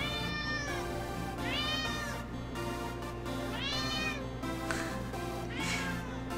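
A domestic cat meowing four times, each meow drawn out and rising then falling in pitch, about a second and a half apart.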